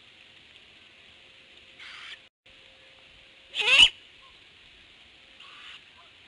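Great horned owlets in the nest giving raspy, hissing screeches, the young owls' food-begging call. There is a soft hiss about two seconds in, a loud harsh screech that wavers in pitch just past the middle, and another soft hiss near the end.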